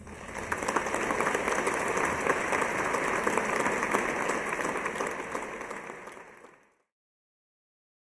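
Concert audience applauding in a large hall, a dense, steady clapping that thins out and then cuts off suddenly about six and a half seconds in.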